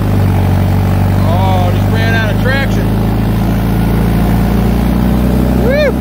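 New Holland tractor's four-cylinder diesel engine running at a steady, loud note under heavy load, pulling a subsoiler 27 inches deep at about 5 mph: the load makes the engine grunt.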